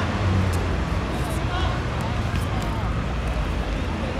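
Distant shouts and calls of footballers on the pitch over a steady low rumble of city traffic.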